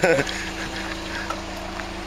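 Toyota Corolla sedan's engine idling: a steady, even hum with a low rumble underneath.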